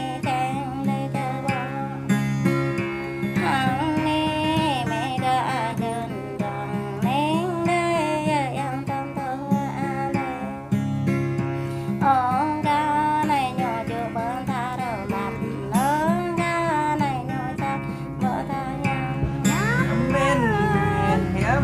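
A song in the Jrai language: a voice singing a wavering melody over guitar accompaniment.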